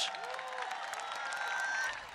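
A large crowd applauding and cheering: a steady wash of clapping with a few faint voices in it, fading away near the end.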